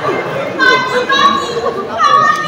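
Stage actors' raised, high-pitched voices, with drawn-out held tones from about half a second in.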